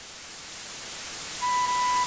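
White-noise riser in a K-pop karaoke backing track: a hiss growing steadily louder while the beat is out, with a single held synth tone coming in about one and a half seconds in.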